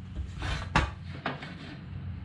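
A long metal level being slid and repositioned across a wooden 2x12 board, giving a few short scrapes and knocks, the loudest a little under a second in.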